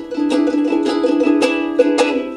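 Solo ukulele played in a steady rhythmic pattern of plucked and strummed notes, about five strokes a second, as an instrumental passage between sung lines.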